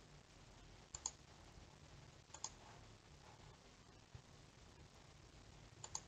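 Near silence broken by a few short, sharp clicks, mostly in quick pairs: about a second in, about two and a half seconds in, and near the end.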